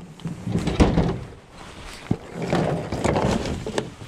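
Pickup truck tailgate being opened, with a sharp knock about a second in and another about two seconds in, and rustling and clatter of gear being handled in the truck bed.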